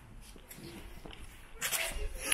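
Footsteps on slippery ground, with a short, louder scuff near the end.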